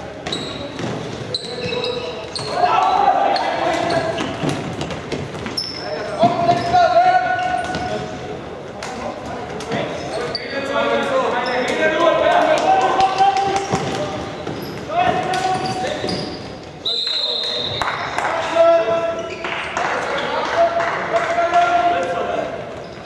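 Floorball game sounds echoing in a sports hall: repeated shouts and calls from players, with scattered sharp clicks and knocks of sticks, ball and feet on the hall floor.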